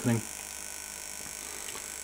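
A steady electrical hum and hiss with thin, steady high-pitched tones, holding at one level with no change.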